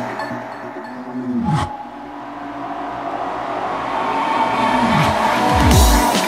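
Psytrance breakdown: the kick drum drops out, leaving sustained synth lines and deep falling pitch sweeps. The music builds back up and the beat returns near the end.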